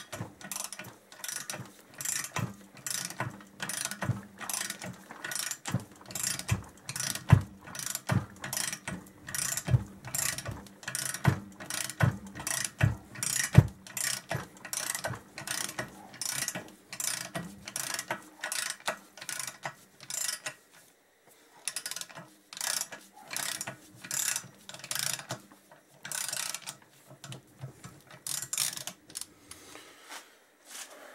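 Ratchet wrench clicking in short repeated strokes, roughly two or three a second, as it turns a gripping stud-removal tool to unscrew a steel cylinder stud from a Kawasaki KZ1000J crankcase. A few sharper knocks come in the middle, and there are short pauses between strokes near the end.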